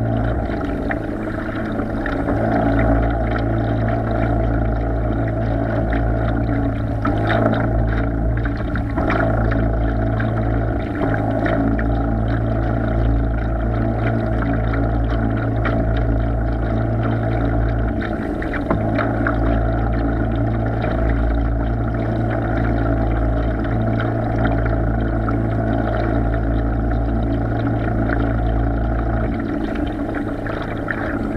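Remote-controlled bait boat's electric drive motors and propellers running steadily with a constant hum, picked up by a camera on the hull. Water splashes and laps against the hull as it moves.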